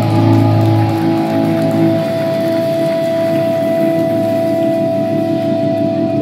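Live rock band music: electric guitars ring out sustained chords with no drumbeat, and one steady high note is held from about a second in.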